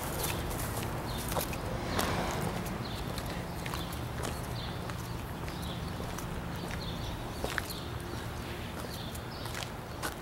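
Footsteps of someone walking outdoors, a few irregular light steps over a steady low background hum.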